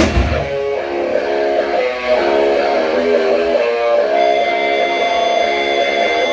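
Electric guitar playing a quiet rock passage of held, ringing notes, with no drums or bass. The drums and bass cut out just at the start.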